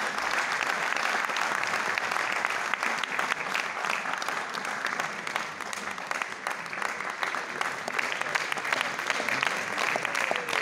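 Audience applauding: many people clapping at once, steady, dipping a little in the middle.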